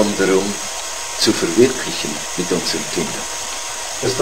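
A voice speaking a few short, quiet phrases over a steady hiss of background noise.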